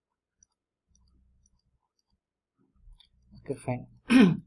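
A few faint computer mouse clicks in near quiet, followed by a short spoken word near the end.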